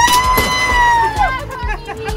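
A long, very high-pitched cry, rising then falling and lasting about a second and a half, over background music.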